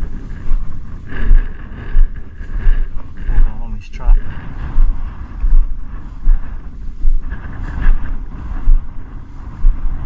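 Wind buffeting the microphone and tall dry grass swishing as a person walks through it, with a regular thump from each stride, about one every two-thirds of a second.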